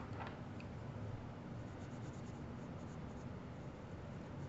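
Faint scratching of a graphite pencil on paper as shading strokes are laid down, over a low steady hum.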